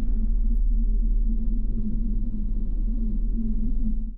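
A steady low drone with a wavering low tone, with no speech over it.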